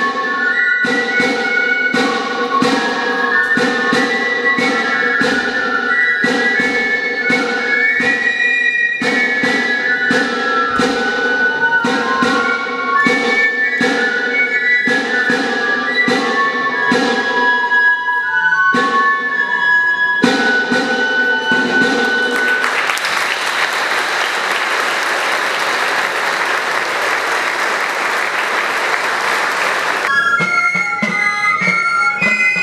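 Basque pipe and drum (txistu and drum) playing a dance tune: a high piping melody over a steady drum beat. The music stops about two-thirds of the way through and the audience applauds.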